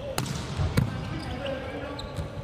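A volleyball struck hard on a jump serve, then hit again about half a second later as the serve is passed. Players' voices are heard in a large hall.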